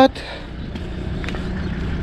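Volvo XC90 tow car's engine idling steadily, a low even hum.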